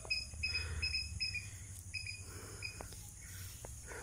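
A cricket chirping in short, high, steady-pitched chirps that come in irregular runs. A low rumble on the microphone sits beneath them.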